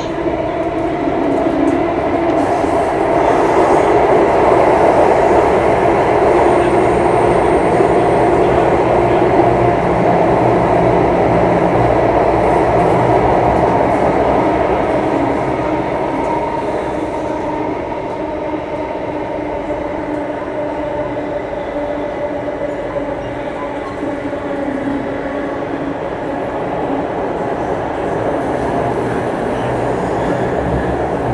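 Singapore MRT Circle Line train running between stations, heard from inside the passenger car: a steady rumble with a hum of several held tones, a little louder in the first half.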